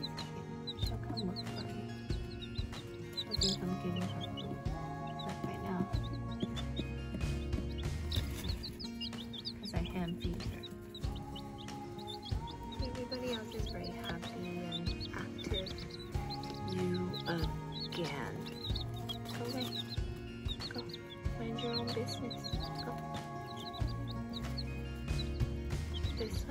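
Young chicks peeping in short high chirps over background music.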